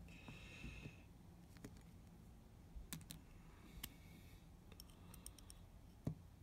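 Faint, sparse clicks and small taps of a metal nib being worked into a bamboo dip-pen holder, with a quick run of clicks about five seconds in.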